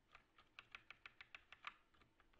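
Faint computer keyboard keystrokes: about ten quick, light taps in under two seconds, keys pressed repeatedly to move up through code in a text editor.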